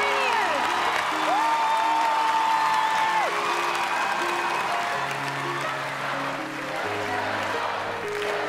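Backing music of sustained chords over an audience applauding and cheering, with a long whoop from the crowd about a second in.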